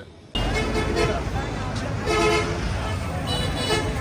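Busy street traffic noise, starting abruptly a moment in, with vehicle horns honking: a longer horn blast about two seconds in and shorter ones near the end.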